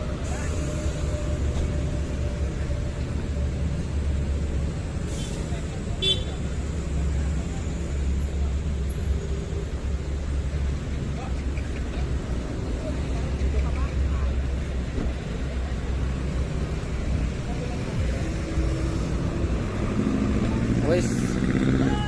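Double-decker coach's diesel engine running with a steady low rumble, then pulling away, over passing street traffic and motorcycles. Voices come in near the end.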